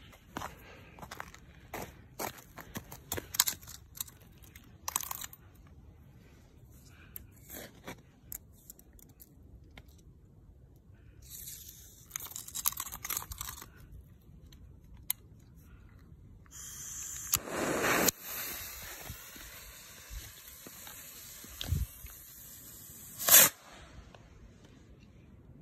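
Homemade bottle rocket with blue stars being set up and fired: scattered crunching and handling clicks, then a steady hiss that runs for about seven seconds with a louder rush partway through. It ends in one sharp bang near the end as the rocket bursts.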